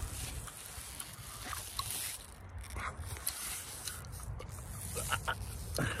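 Handling noise from a hand-held phone being moved around: a low steady rumble with a few faint, scattered clicks.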